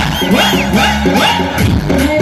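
Live pop music played loud through a stage PA system, with a crowd cheering and whooping over it early on.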